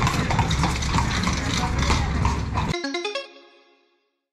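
A horse-drawn carriage passing close by: hooves clip-clopping on the paving amid street noise. About two and a half seconds in the sound cuts off abruptly, leaving a few ringing music notes that fade out.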